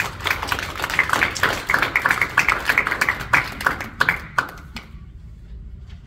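Audience applauding, a quick patter of many hand claps that dies away near the end.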